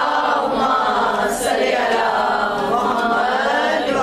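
Women's voices chanting an Urdu devotional manqabat together, with several voices overlapping in a steady, loud sung recitation.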